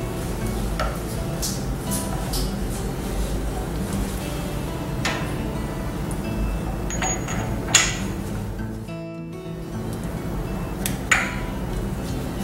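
Steel upper punches clinking against the turret of a tablet press as they are slid into their holes, with sharp metallic clicks, the loudest a little before the middle and again near the end. Background music plays throughout.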